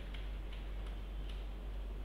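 Faint, irregularly spaced clicks of keys being pressed, a few in two seconds, over a steady low hum.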